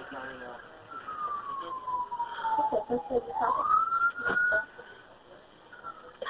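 An emergency vehicle siren heard over a telephone line: one slow wail that falls in pitch, rises again and holds high for about a second before fading. These are the sirens of the rescue units arriving.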